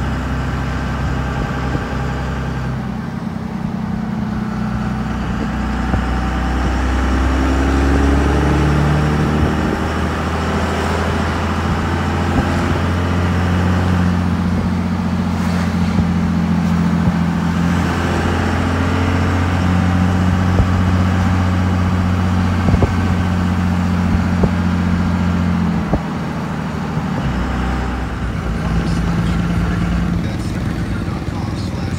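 Engine and road noise heard from inside a slowly moving vehicle: a steady low drone whose pitch shifts up and down as the vehicle speeds up and slows.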